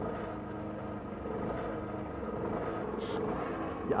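A steady hum with several held tones over a low rumble, slightly louder in the middle.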